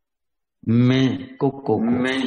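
A man's voice reciting in a slow, drawn-out, chant-like way, starting a little over half a second in after dead silence.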